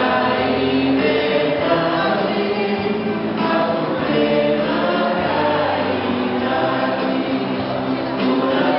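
A choir singing a hymn, with held notes at a steady level.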